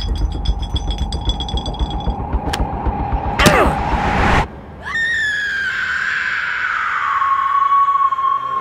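Horror-film soundtrack of score and sound effects. A low rumble runs under a rapid run of clicks, with a loud sweeping whoosh about three and a half seconds in. It cuts off suddenly, then a long high tone slides down in pitch and holds.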